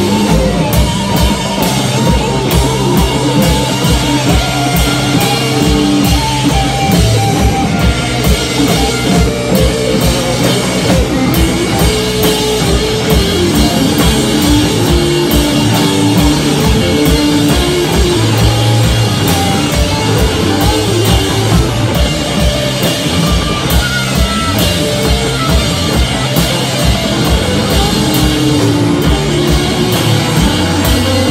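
Live rock band playing loud: electric guitars over a drum kit beaten in a fast, steady rhythm, with no break.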